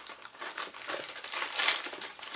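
Cardboard box of frozen Eggo breakfast sandwiches being opened by hand, the box flap and packaging crinkling in an irregular crackle that grows loudest near the end.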